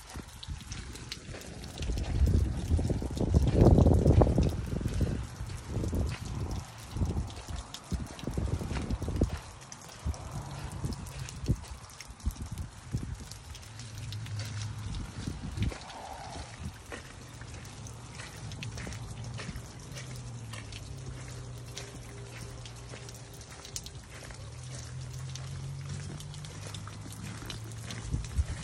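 Rain pattering and dripping on an umbrella overhead, many small ticks throughout. A burst of low rumbling comes a few seconds in, and a low steady hum joins from about halfway.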